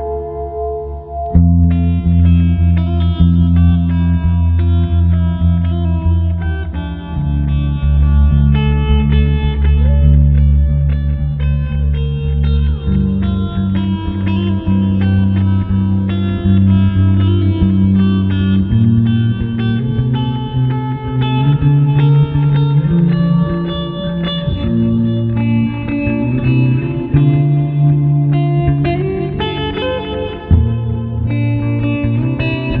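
Solo electric guitar playing an ambient instrumental through Guitar Rig 5 with delay and reverb: notes ringing on over low chords that change every couple of seconds.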